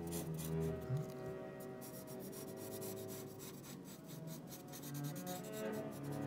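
Felt-tip marker scratching across paper in quick, repeated short strokes, over background music of sustained notes.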